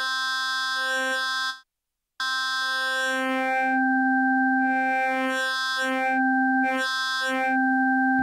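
Modal Argon 8M wavetable synthesizer holding a note at one steady pitch while its Wave 1 oscillator is swept through a bank of waveforms, so the tone keeps changing colour as upper harmonics come and go. The first note stops about a second and a half in, and after a short gap a second note sounds and holds to the end.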